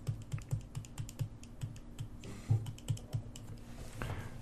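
Stylus pen tapping on a tablet screen while writing by hand: a run of faint, irregular clicks and light taps.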